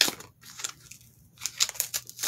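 Packing tape and packaging being picked at and pulled open by hand: a sharp click at the start, then short scratchy tearing and crinkling sounds, more of them near the end.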